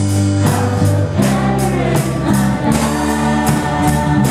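Mixed choir of young and adult voices singing a Christian worship song over instrumental accompaniment with a steady beat, about three strokes a second.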